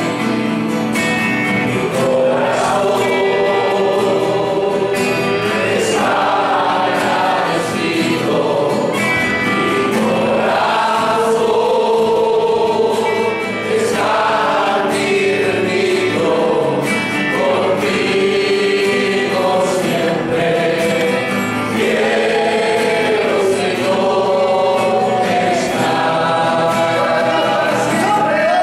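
A congregation singing a hymn together, accompanied by strummed guitars.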